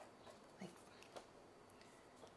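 Near silence, with faint scratching of a felt-tip marker drawing on paper and a few faint short ticks.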